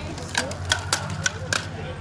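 Five sharp clicks at uneven intervals over about a second, heard over background voices.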